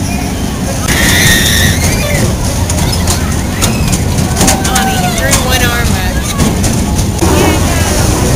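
Steady low mechanical rumble of a spinning fairground ride's machinery, with people's voices over it. A brief high steady tone sounds about a second in.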